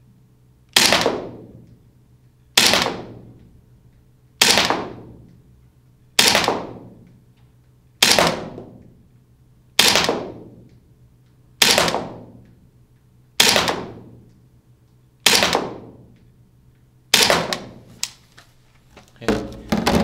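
Lambda Defence GHM9-G gas-blowback airsoft submachine gun firing ten single shots, one about every 1.8 seconds, each sharp report followed by a long echoing tail.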